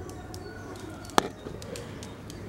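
Reindeer grunting low and softly, with one sharp click a little after a second in.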